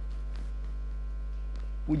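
Steady low electrical mains hum, with a man's voice starting just at the very end.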